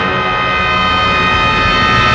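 Orchestral score: a loud brass chord held steady.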